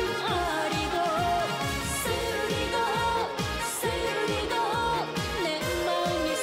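A woman singing a Korean trot (adult-contemporary pop) song into a microphone over a backing band, with a steady dance beat from a kick drum.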